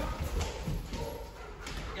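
A Ridgeback-mix dog's paws and nails tapping on a hard plank floor, a few scattered light footfalls as it trots over to its handler and sits.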